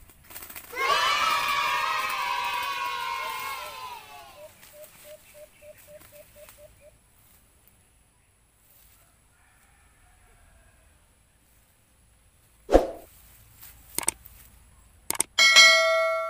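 A loud edited-in sound effect whose pitch falls over about three seconds, then a short run of quick, even low notes. Near the end come a few sharp clicks and a bell-like ding: the sound of a subscribe-button animation.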